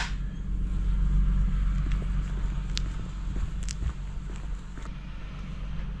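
Van engine idling, a steady low rumble, with a few faint clicks over it.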